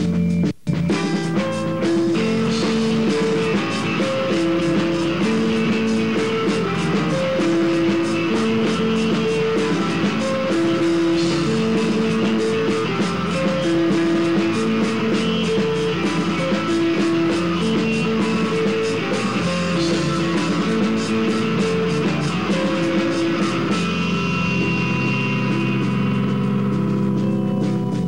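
Live rock band playing: electric guitars repeat a riff of alternating held notes over steady drums and cymbals. The sound cuts out for a split second about half a second in.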